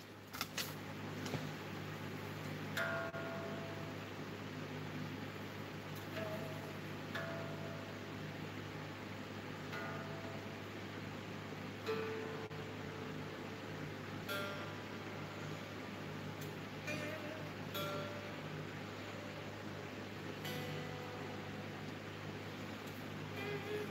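Electric guitar strings plucked softly one note at a time, every second or two, over a steady amplifier hum: the guitar is being tuned because it has gone out of tune.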